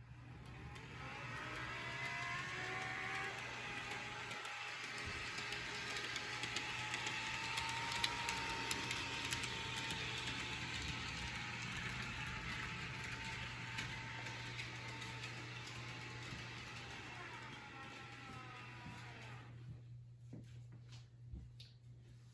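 HO scale model diesel locomotive running on its track, pulling freight cars: its small electric motor whirs with light clicking from the wheels on the rails. The whir builds just after the start, holds steady, and fades out near the end.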